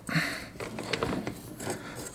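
Faint, irregular scraping and rustling with a few small clicks as a hand works a rubber drive belt onto a riding mower's drive pulley.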